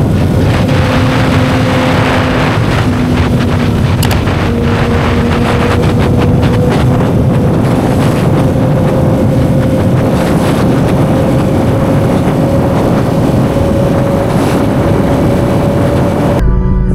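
Sport motorcycle running at highway speed, about 120 to 135 km/h, with heavy wind rushing over the microphone. A steady engine note under the wind climbs slowly as the bike gathers speed.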